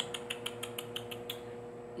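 A rapid run of soft tongue clicks, "tsk-tsk", about nine a second, made with pursed lips as a gesture of "no"; they stop about a second and a half in.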